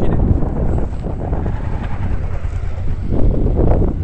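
Motorcycle engines running as the bikes ride slowly past close by on a dirt track, with wind buffeting the microphone; the nearest bike gets loudest near the end.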